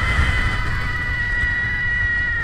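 A rider's long, high-pitched scream held on one steady note, sagging slightly in pitch, over the rumble of wind on the camera microphone as the roller coaster runs.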